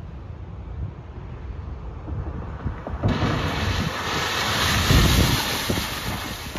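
Wind buffeting the microphone outdoors, gusty rumble with a broad hiss that sets in abruptly about halfway through and swells before easing.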